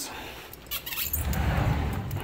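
Handling noise from a handheld camera's microphone: a few short clicks about a second in, then a low rumbling rub as it is moved close past clothes and a fabric hamper.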